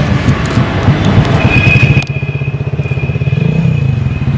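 A motor vehicle engine running close by, a steady low pulsing rumble, joined by a thin high whine from about a second and a half in; the sound drops in level about halfway through.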